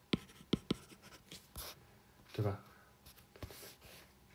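Stylus tip tapping and scratching on a tablet's glass screen while handwriting, in a string of short sharp clicks. A brief murmur of voice comes about two and a half seconds in.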